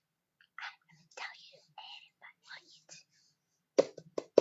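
A person whispering a few short phrases, then a single sharp knock near the end.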